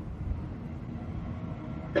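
Pause in a man's speech: only a steady low rumble with faint hiss, the background noise of the recording and room, until the voice resumes just after.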